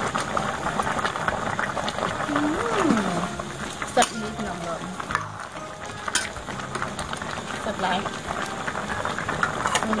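Metal ladle stirring a thick pork lung curry simmering in a stainless steel pot, the liquid bubbling under it. Two sharp clinks of the ladle against the pot come about four seconds in and about six seconds in.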